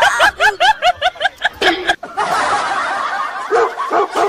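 Rapid, high laughter in quick repeated bursts, about six a second, that cuts off abruptly about halfway through, followed by a steady noisy background.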